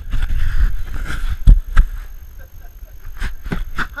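Scattered knocks and thumps, about seven in four seconds, over a low rumble of handling noise. These are footsteps and bumps on a wooden ladder and rock, picked up close by a head-mounted camera.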